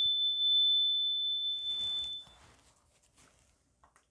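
A handheld single-tone energy chime rings out after being struck with a mallet: one clear high tone that fades away about two seconds in. Faint rustling of hands follows.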